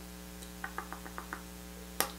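Quiet room with a steady low electrical hum, and a quick run of about six faint ticks in the middle.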